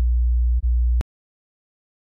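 Unprocessed 60 Hz sine test tone, a steady low hum with a brief dip just over half a second in, cutting off suddenly about a second in.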